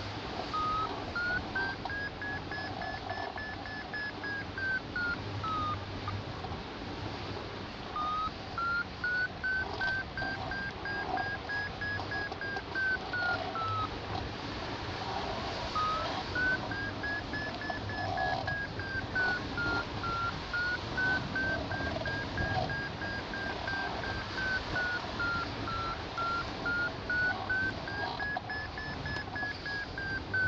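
Hang-gliding variometer beeping its climb tone, the quick beeps rising and falling in pitch every few seconds and breaking off twice, a sign that the glider is climbing in a weak, patchy thermal. Wind noise runs underneath.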